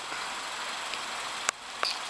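A pickup truck towing a boat trailer rolls slowly past, heard as a steady hiss, with a sharp click about a second and a half in.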